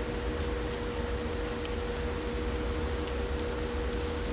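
Metal tweezers picking through a succulent's root ball and gritty potting soil: scattered faint light clicks and scratches over a steady background hum.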